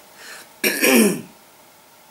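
A woman clears her throat once, a short falling, raspy sound of about half a second just after the start.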